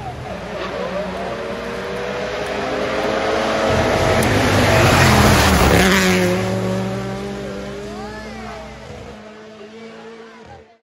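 A car passing on wet tarmac: its engine and tyre hiss build to loudest about five seconds in, then fade away, with the engine pitch swooping up and down near the end.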